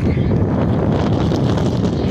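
Wind buffeting the microphone: a loud, rough, steady rumble.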